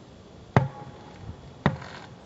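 Playground ball dribbled between the legs, bouncing twice on a hard court about a second apart.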